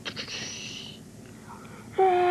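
A person's breathy, whispered hiss lasting about a second, with a few clicks in it, then fading to quiet.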